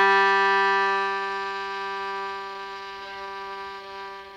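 A violin bowing one long held low G as the final note of the piece, slowly fading away.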